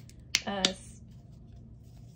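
A few short, sharp clicks: one right at the start, then two around a short spoken 'uh' about half a second in.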